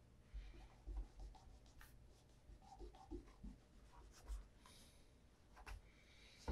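Faint handling of an Allen Edmonds Margate leather cap-toe shoe: soft rubbing and rustling as it is turned in the hands, with several light low knocks as it touches and is set down on the wooden table.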